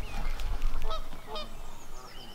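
Geese honking: a few short calls in quick succession.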